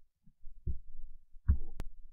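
A few soft, low thuds and one short, sharp click close to a screen recorder's microphone.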